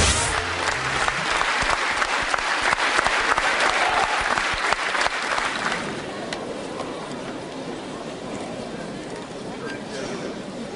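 Audience applauding in a hall: dense clapping for about six seconds, then dying down to lighter, thinner clapping.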